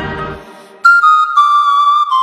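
Folk-song accompaniment drops away, then about a second in a solo high wind instrument such as a folk flute enters with a loud held note that steps down slightly in pitch.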